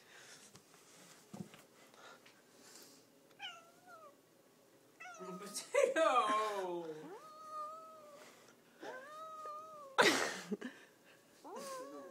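A domestic cat meowing repeatedly, about five meows, some short and some drawn out with a falling pitch; the loudest is about six seconds in. A short rush of noise comes near the end.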